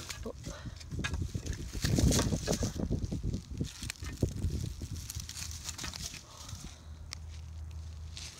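Dry pine needles rustling and crackling as a white crappie is gripped and handled on the ground, in an irregular run of short crunches and clicks that is busiest about two to three seconds in.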